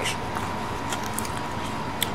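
Steady background hum and hiss with a faint steady high tone, and a few faint light clicks of a plastic fork picking food from a foam takeout container.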